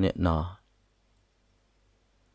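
A voice narrating in Hmong for about half a second, then a pause that is nearly silent apart from one faint, high click about a second in.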